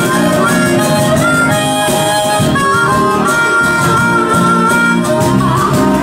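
Live band music: a harmonica solo of long held notes, some of them bent in pitch, over steady guitar accompaniment.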